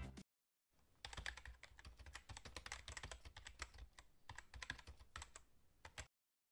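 A faint run of quick, irregular clicks and taps, several a second, starting about a second in and stopping just before the end.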